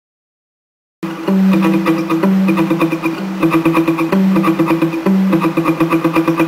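Acoustic guitar fingerpicked, starting about a second in: a quick, even run of repeated plucked notes over a bass line that changes every second or so.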